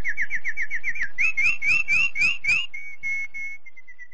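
Bird-like whistled chirps closing a music track. There is a quick run of short sliding notes, then six louder rising chirps about a second in. Near the end a single note repeats and fades away like an echo.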